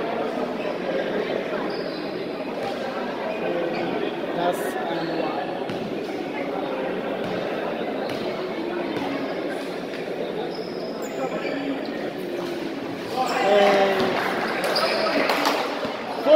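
A basketball bouncing on an indoor court floor during free throws, with the echoing chatter of players and spectators in a large hall, growing louder near the end.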